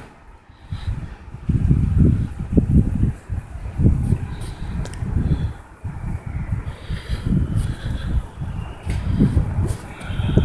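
Wind buffeting the phone's microphone outdoors: low, uneven rumbling gusts that rise and fall every second or so.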